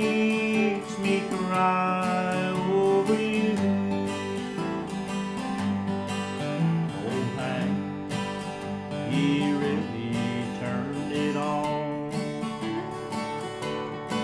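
Two acoustic guitars playing an instrumental country passage between verses: a strummed rhythm under a picked melody line.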